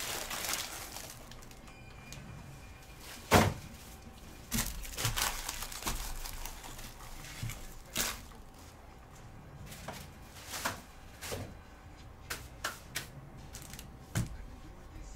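Scattered knocks and clicks from objects being handled on a desk, the loudest a single knock about three seconds in, with smaller clicks later.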